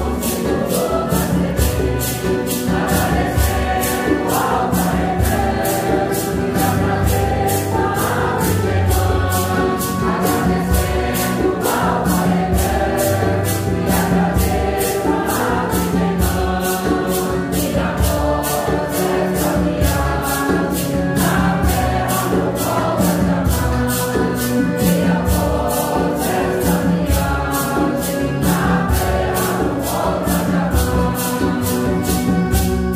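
A mixed congregation of men and women sings a Santo Daime hymn in Portuguese, in unison, over a steady rhythm of shaken maracas at about two strokes a second.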